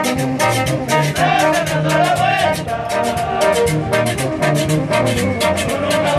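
A Peruvian brass band (banda) playing live: brass and sousaphones over a steady, fast beat from congas, timbales and drum kit.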